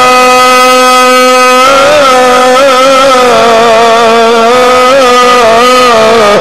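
A man's voice reciting the Quran in the melodic Egyptian mujawwad style, amplified through a microphone. It holds one long steady note for about the first second and a half, then moves into a wavering, ornamented melodic line.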